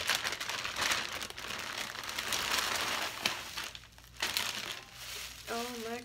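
Clear plastic wig bag crinkling as it is pulled open and the wig is worked out of it. The rustle runs dense for about four seconds, breaks briefly, then picks up again. A short exclamation is heard near the end.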